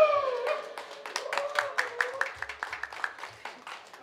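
A few people clapping by hand as the drum music stops, the claps coming about four or five a second and fading away. Over them a voice holds a falling note for the first second or two.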